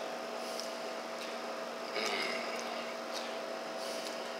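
Steady electrical hum from bench equipment, with a short hiss a little past halfway.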